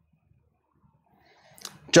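Near silence for over a second, then a quick breath in and a man's voice starting to speak right at the end.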